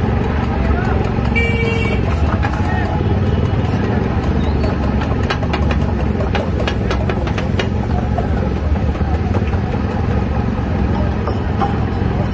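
Busy street ambience at a roadside food stall: a steady rumble of motorcycle and traffic engines under background voices. A brief horn toot sounds about one and a half seconds in, and a quick run of sharp clicks comes around the middle.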